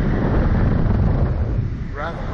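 Wind buffeting the microphone on a swinging Slingshot reverse-bungee ride capsule, a loud, steady rumble.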